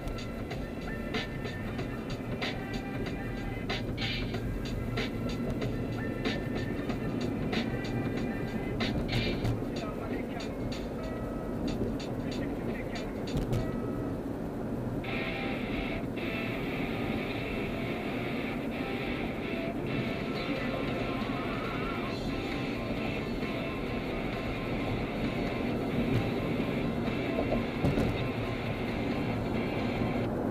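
Music playing from a car stereo inside a moving car's cabin, over steady road and engine noise at freeway speed.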